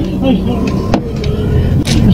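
Low rumble heard from inside a car's cabin, with muffled voices and two sharp knocks, one about a second in and one near the end.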